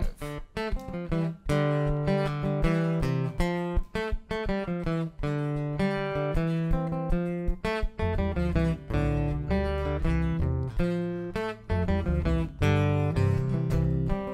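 Acoustic guitar strummed in a steady groove in five-four time, an instrumental intro; an upright double bass comes in with deep plucked notes about eight seconds in.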